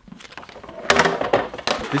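Sheets of paper sheet music rustling and crackling as they are taken off a music stand and handled, in a quick run of sharp rustles from about a second in.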